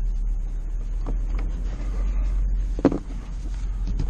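Ford Expedition's V8 idling, a steady low rumble in the cabin, with a few light knocks and one sharp clack about three seconds in as the driver's door shuts on the seat belt.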